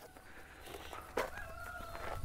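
A faint, drawn-out animal call in the background, starting about halfway in and held steady.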